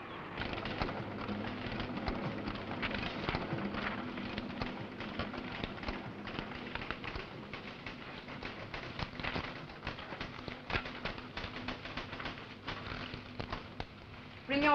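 Rotary stencil duplicator running, its steady mechanical clatter mixed with rustling paper as printed sheets feed out onto a stack.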